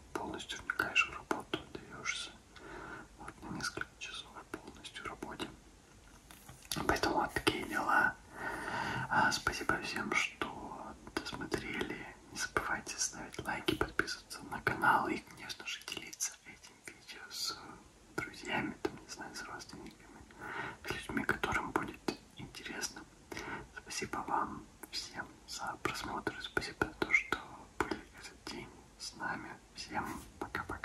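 A man speaking in a whisper, in short phrases with brief pauses.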